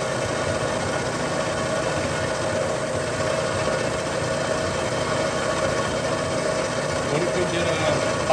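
A Bridgeport milling machine's end mill cutting into the cast iron differential housing of a Dana 60 axle: a steady machining noise with one held mid-pitched tone.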